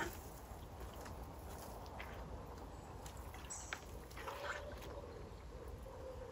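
Faint sloshing and small splashes of water and mud as plant pots are worked into a pond bed by hand, over a low steady rumble. An animal calls faintly twice in the second half.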